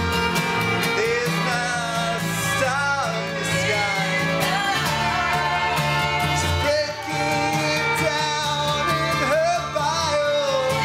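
An acoustic band playing live, with upright bass, fiddle, acoustic guitar and flute, over sustained low bass notes.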